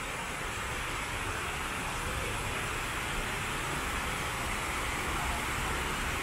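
Water falling down the walls of a 9/11 Memorial reflecting pool into its central void: a steady, even rush that does not change.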